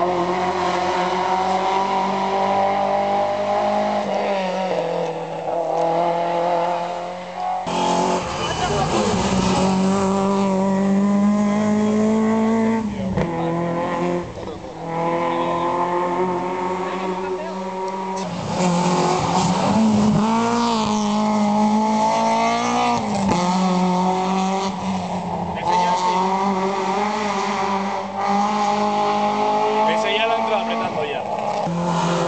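Rally car engine running hard along the stage, its revs climbing and falling through gear changes and lifts, with several sudden drops in pitch.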